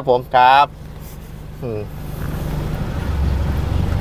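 Isuzu vehicle's engine heard from inside the cabin, idling and then picking up as the vehicle pulls away, growing steadily louder over the last two seconds.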